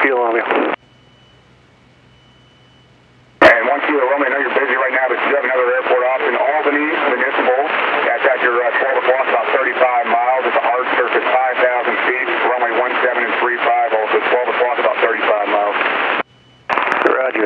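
Voices over an aviation radio (ATC frequency), narrow and tinny and unintelligible. After a short lull carrying only a faint steady tone and hum, a click about three and a half seconds in opens a long, unbroken garbled transmission.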